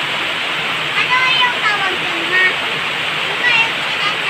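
Heavy rain pouring down in a steady, unbroken hiss.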